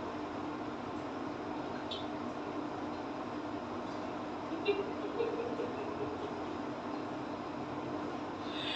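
A steady hum with hiss, like a running fan or air conditioner, with a few faint clicks and light handling sounds in the middle.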